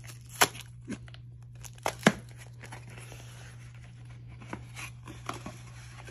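Cardboard packaging being torn open by hand: a few sharp rips, the loudest about two seconds in, then softer rustling and crinkling of the box and paper.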